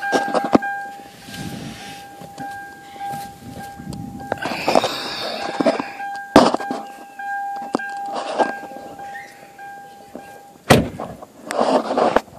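A car's warning tone sounds steadily while someone moves around and gets out, with rustling and sharp knocks. The tone cuts off near the end, and a door thunks shut just after.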